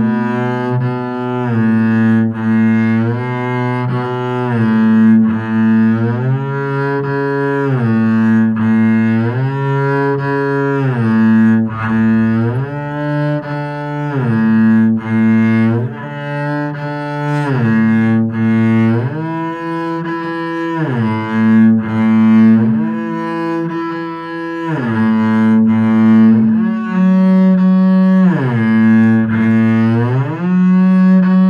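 Double bass played with the bow in a shifting exercise: sustained notes moving up and back down the fingerboard, joined by audible slides from one note to the next.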